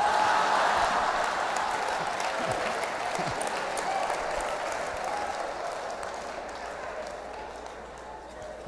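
A large congregation laughing and applauding in response to a joke. The sound starts at full strength and dies away gradually over several seconds.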